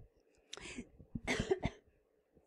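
A woman coughing: a few short coughs, starting about half a second in.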